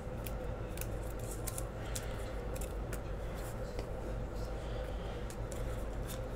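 2016 Panini Donruss soccer trading cards being handled: a run of light, irregular flicks and clicks as a card is slid into a plastic penny sleeve and the stack is flipped through by hand. A low steady hum runs underneath.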